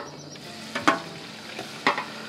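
A metal bowl knocking against a metal cooking pot on a gas burner, three sharp clinks about a second apart, over a steady sizzling from the pot as food is tipped in.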